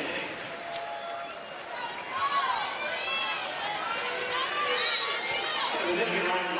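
Arena crowd noise on a volleyball court between rallies, with many short squeaks from players' sneakers on the hardwood floor through the middle and later part.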